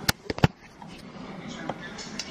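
Three sharp clicks in quick succession within the first half second, then quiet room tone.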